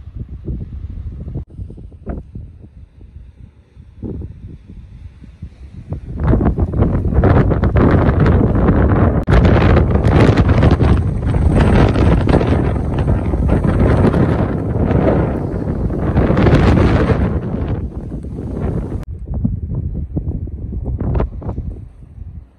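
Wind buffeting the phone's microphone in gusts: weaker gusts at first, then a loud, low rumble of wind noise from about six seconds in that eases off a few seconds before the end.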